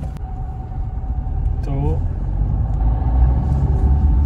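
Maruti Swift's 1.3-litre four-cylinder DDiS diesel engine and road noise heard from inside the cabin: a steady low rumble that grows slowly louder as the car drives in first gear.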